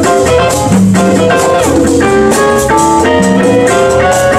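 Small live jazz band playing a soul-jazz instrumental, with electric guitar, keyboard and drums keeping a steady groove.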